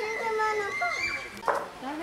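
A young polar bear gives a single short, sharp bark, like a dog's 'woof', about one and a half seconds in. A child's high voice is heard before it.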